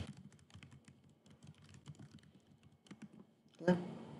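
Typing on a computer keyboard: a quick, uneven run of faint key clicks that stops shortly before the end.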